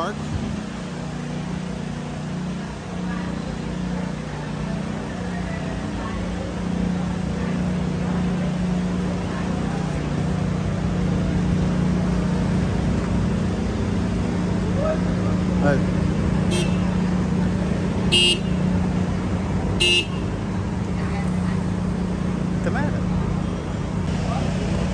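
City street traffic: a steady low engine hum from passing and waiting vehicles, with three short high-pitched toots in the last third, about a second and a half apart.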